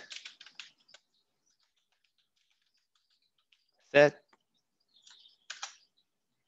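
Computer keyboard typing: a quick run of key clicks at the start and another short run near the end, with a quiet gap between.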